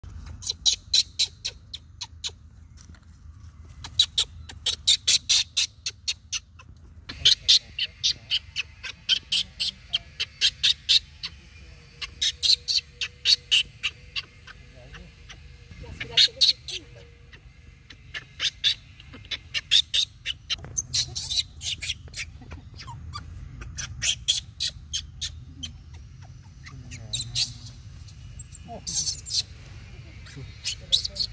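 Fast, high-pitched chirping in repeated runs of sharp pulses, about five a second, each run lasting a few seconds, over a low steady background rumble.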